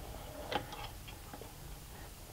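A few faint, short clicks and light rattles of harness rope and its clip hardware being handled as the slack in the rope system is taken up.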